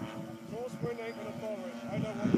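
Distant drone of a large RC model airplane's engine, a steady even tone as it flies a circuit, with faint voices in the background.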